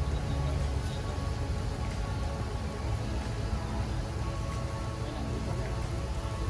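Faint music over a steady low rumble.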